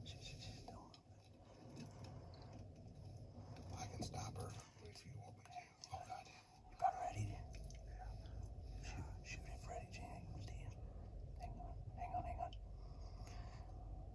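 Hushed whispering between people, with a single sharp knock about halfway through and a low rumble after it.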